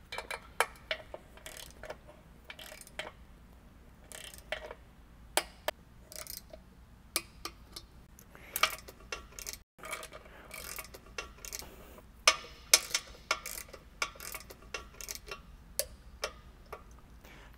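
Inch-pound click-type torque wrench ratcheting and clicking as the intake manifold bolts are tightened on the first pass of the torque sequence, to 44 inch-pounds. Sharp clicks come irregularly, some in quick little clusters.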